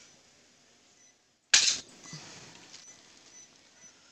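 A single short, sharp noise about one and a half seconds in, over faint steady hiss with a few soft ticks.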